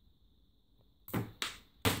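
A small LEGO toy cannon's spring-loaded shooter firing its projectile: a quick snap about a second in, then a sharp click a moment later as the fired piece lands, after a second of near silence.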